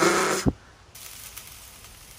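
Crepe batter hissing on a hot crepe griddle: a loud hiss for about half a second that ends in a knock, then a faint steady sizzle.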